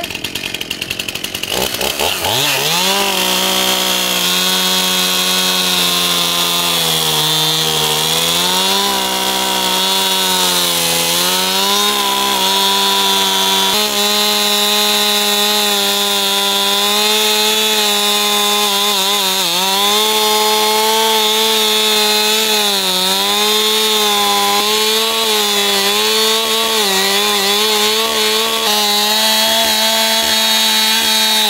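Stihl two-stroke chainsaw revving up in the first couple of seconds, then running at full throttle while cutting into a tree trunk. Its pitch sags and recovers several times as the chain loads up in the wood while cutting the notch of a wedge cut to fell the tree.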